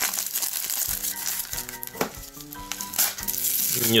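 Plastic postal mailer bag crinkling and rustling as it is handled and pulled open, with quiet background music of held notes coming in about a second in.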